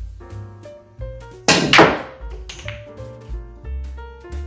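Two loud, sharp clacks in quick succession about one and a half seconds in from a pool shot: the cue tip striking the cue ball, then ball striking ball. Background music with piano and bass runs underneath.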